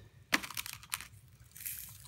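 The small plastic ROBOTIS-MINI humanoid robot being handled: one sharp click about a third of a second in, then a few lighter clicks. Near the end comes a soft hiss of fine play sand falling from the robot.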